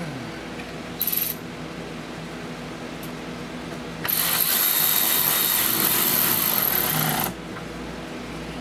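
A power tool runs steadily for about three seconds from about four seconds in, with a high hissing whir. A short sharp click comes about a second in.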